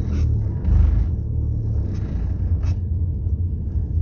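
Low, steady rumble of a car heard from inside the cabin while it is driven, swelling briefly about a second in, with a single light click later.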